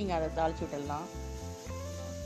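Background music: a voice with bending pitch in the first second, then held notes over a steady bass.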